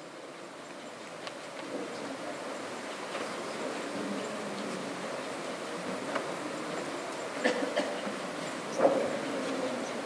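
Steady low murmur of a seated audience in a lecture hall during the changeover at the podium, with a couple of faint voices later on.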